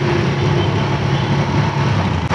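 Motorcycle engine running at a steady pace while riding, with road and wind noise.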